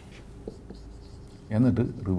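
Marker pen writing on a whiteboard, faint strokes and ticks of the tip on the board. A man's voice starts near the end.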